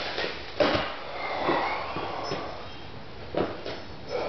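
A lifter's forceful breaths and rustling movement as he lies back on a weight bench and takes hold of the barbell, getting ready for a heavy bench press. A sharp burst comes about half a second in, a longer breathy stretch follows, and another short burst comes near the end.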